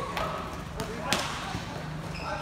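A futsal ball being kicked and bouncing on a hard court: a few sharp thuds, the loudest a little over a second in.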